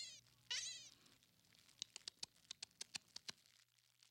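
A cartoon rabbit's short, high, squeaky chatter about half a second in, then a quick run of about a dozen light ticks lasting about a second and a half; faint overall.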